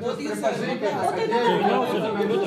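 Speech only: several people talking, voices overlapping.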